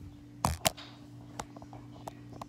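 Two sharp knocks in quick succession about half a second in, then a lighter tap, over a steady low electrical hum.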